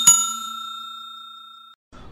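A notification-bell 'ding' sound effect: a single struck chime whose tones ring together and fade away over nearly two seconds, as the bell icon of a subscribe animation is pressed.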